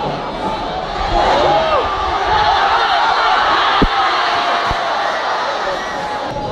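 Football crowd in the stands shouting and calling, swelling louder about a second in as an attack reaches the goalmouth. Two dull thumps come near the middle.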